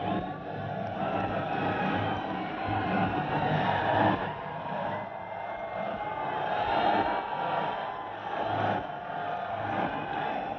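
Second-generation Tesla Roadster prototype driving hard on a track: tyre noise and a faint whine that rises and falls a few times, with no engine note.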